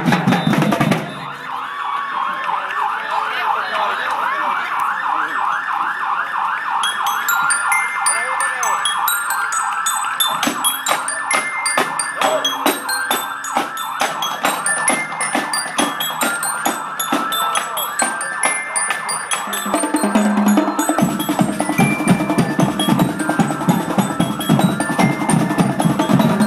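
Marching drumline playing on the move: marching snare and tenor drums beating a steady rhythm while a marching bell lyre rings out short bright notes over them.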